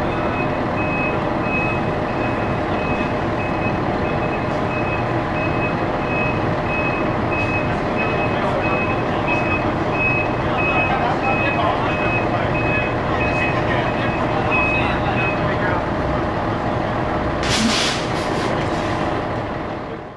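A large emergency truck's backup alarm beeps repeatedly at a single pitch over its running engine, the beeps stopping a little over three-quarters of the way through. Near the end a short, loud hiss of air is heard, typical of a truck's air brakes being set.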